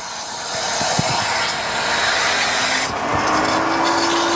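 Water rushing through a just-opened valve on a Grundfos Hydro Multi-E booster set, a steady hiss that swells in the first second. About three seconds in, a whine from the running CR3-10 pump comes in, rises slightly in pitch and holds, as the pump speeds up against the falling pressure.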